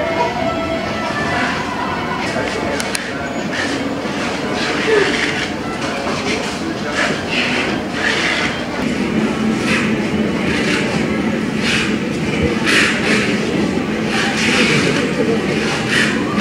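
Busy indoor shop ambience: a steady hum of air handling and room noise under a murmur of indistinct voices, with scattered soft rustles and clicks.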